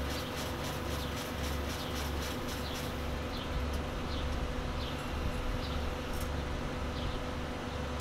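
Hyosung ATM cash dispenser running: a steady, pulsing motor hum with rapid ticking, about four or five ticks a second for the first few seconds, as the machine counts out and presents banknotes.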